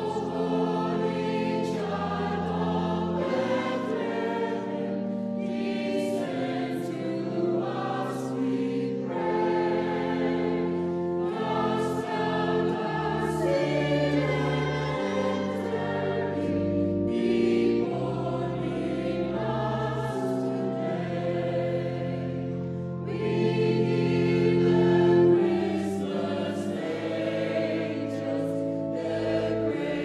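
Mixed-voice church choir singing a Christmas carol, with sustained organ bass notes underneath. The singing swells louder about three quarters of the way through.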